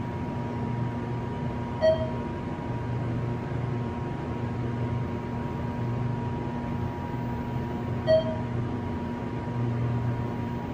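ThyssenKrupp Endura MRL hydraulic elevator car going up, heard from inside the cab: a steady low hum of the ride, with a single short chime about two seconds in and another about eight seconds in as it passes floors.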